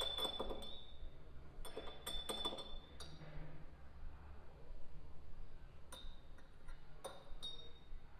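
A thin metal spoon clinking against a small glass while stirring food colouring into vodka. The clinks come in short runs, each with a brief ringing tone: a few at the start, a cluster about two to three seconds in, and more near the end.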